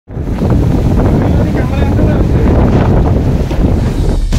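Strong storm wind buffeting the microphone: a loud, steady rush, heaviest in the low end, as gale-force gusts blow through trees.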